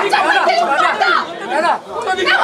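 Crowd of people talking over one another: loud, overlapping voices with no single clear speaker.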